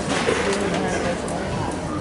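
Murmur of many overlapping voices from a seated audience in a reverberant gymnasium, with one or more voices close to the microphone.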